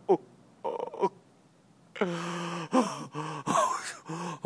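A man's voice: after the word "moon", a long, steady-pitched moan starts about halfway through, then breaks into shorter wavering groaning cries of exaggerated, overwhelmed awe.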